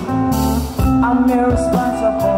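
Live band music: electric guitar over bass and drums, with singing.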